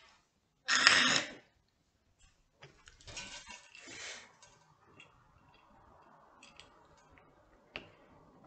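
A woman coughing: one loud cough about a second in, then two quieter coughs around three and four seconds in, followed by faint rustling.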